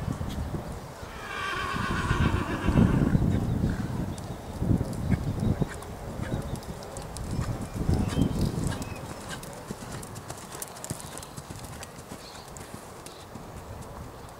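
Horse hoofbeats on arena sand, with a horse whinnying for about a second and a half starting about a second in. The hoofbeats are quieter in the last few seconds.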